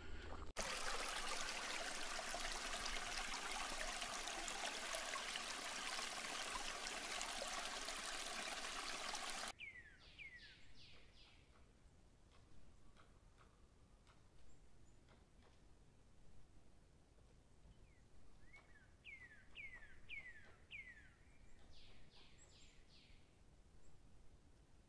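A steady rushing hiss that cuts off abruptly about nine seconds in. After it, in quiet woodland, a songbird sings two short series of clear down-slurred whistled notes.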